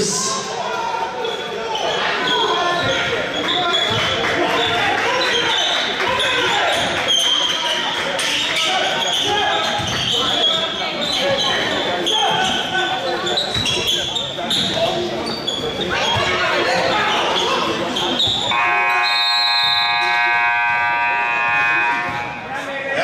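Basketball game in a gymnasium: a ball bouncing and players' voices. About eighteen seconds in, the scoreboard buzzer sounds one long, steady tone for about three seconds as the game clock runs out at the end of the first half.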